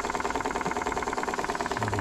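Small two-cylinder model steam engine running fast with rapid, even exhaust beats, still driving in forward on the boiler's remaining steam pressure just after the gas burner has been shut off.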